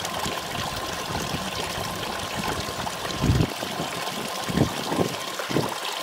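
Water running and splashing steadily, an even hiss, with three low thumps in the second half. The sound stops suddenly at the end.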